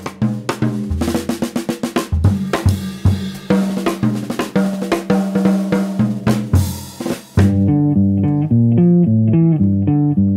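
Jazz drum kit solo, with snare, bass drum and cymbals played in quick, busy figures over a repeating bass line. About seven seconds in, the band comes in with a fast bebop line in call and response with the drums.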